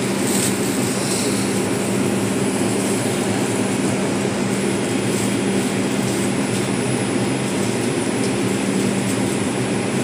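Steady interior noise of an R142 subway car held during a delay: a constant hum with an even rush of air from the car's ventilation and onboard equipment.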